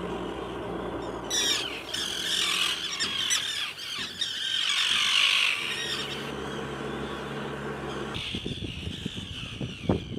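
Gulls calling in harsh squawks, thickest between about one and six seconds in, over a steady low engine hum.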